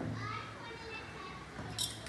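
Faint children's voices in the background, with a brief light clink near the end.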